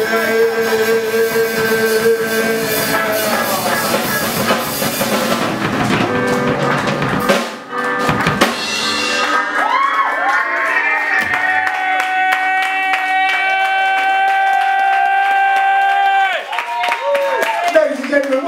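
Live ska band ending a song: the full band with drums plays under a held note for the first seven seconds, then breaks off. From about nine seconds in, long sustained ringing tones with pitch slides hang over the stage without drums, cutting off about two seconds before the end.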